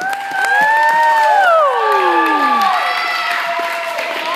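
A small audience cheering and whooping, several voices overlapping in long rising and falling calls, with scattered hand clapping.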